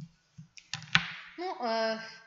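A woman draws a quick breath and there is a single sharp click about a second in. She then starts speaking with a held «Ну».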